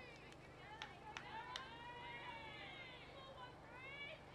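Faint, distant voices of softball players calling out on the field, with a few short sharp clicks in the first half.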